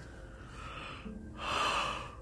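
A person's gasping breath: a noisy rush of air, strongest in the second half. A faint steady low hum starts about a second in.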